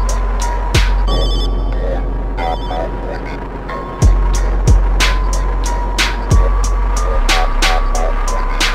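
Slowed-down, chopped-and-screwed hip-hop instrumental: deep 808 bass, kick and snare hits and hi-hats under a held synth note. The drums drop out about a second in, leaving a short ringing, bell-like chime, and come back with a heavy bass hit about four seconds in.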